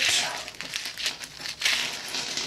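A small plastic bag of screws and nuts crinkling as hands grip it and pull it open, in irregular crackly bursts.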